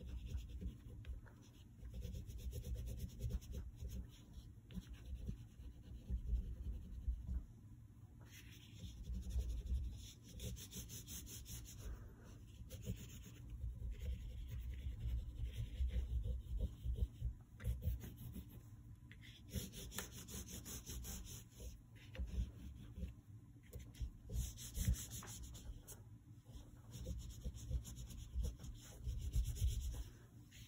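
Black oil pastel stick scratching and rubbing across paper in irregular drawing and shading strokes, with a few stronger spells of scrubbing.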